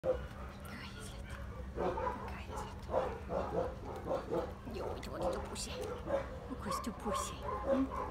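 Dog barking and yipping, mixed with a woman's voice.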